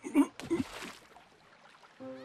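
A short gasp-like voice sound, then a brief cartoon water splash that fades within about half a second, leaving near silence.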